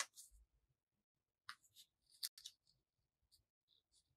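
Scissors snipping through thin craft paper in short, faint cuts, in a few clusters: at the start, again from about a second and a half to two and a half seconds in, and a few softer snips near the end.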